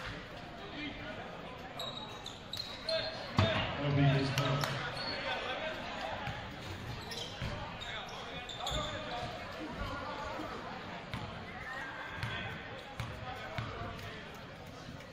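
Indoor basketball gym: a steady murmur of spectators' and players' voices echoing in the large hall, with a basketball bouncing on the hardwood floor and a sharp knock about three and a half seconds in.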